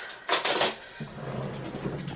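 Metal fork clattering against other cutlery or dishes, a short rattle about half a second in, followed by a soft steady hiss.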